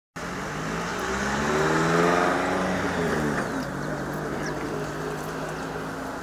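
Motor vehicle engine running, its pitch rising for about two seconds and then falling away, over steady outdoor noise.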